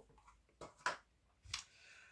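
A few soft clicks and taps from a small deck of oracle cards being picked up and handled, the sharpest about a second in.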